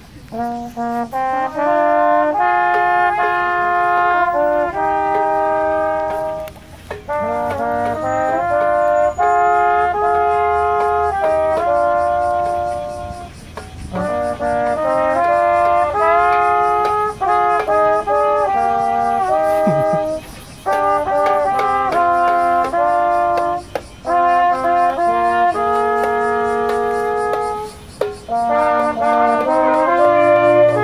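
Small street brass band of trumpets, saxophones and a tuba, with a hand-held drum, playing a tune together. It starts about a second in and goes in phrases separated by brief pauses.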